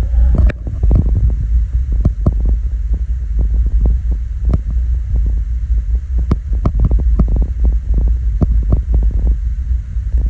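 A steady low rumble of wind on the microphone, with irregular sharp clicks and taps from handling the phone and the fishing tackle while a hair rig is being baited.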